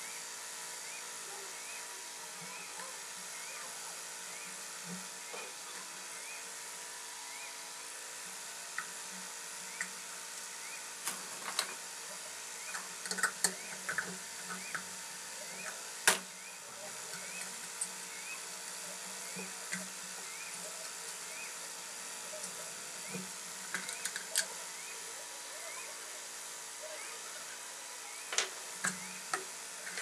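Screwdriver and metal ceiling-fan parts clicking and knocking in scattered bursts as the fan motor's top fittings are worked loose and handled, over a steady background hum. The loudest is a single sharp knock about halfway through.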